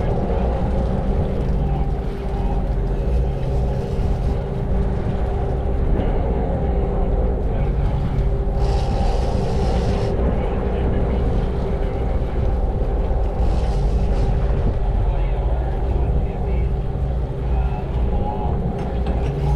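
A sportfishing boat's engines running steadily under way: a continuous low drone with a steady hum above it.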